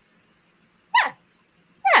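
A dog giving two short yelps about a second apart, each falling steeply in pitch.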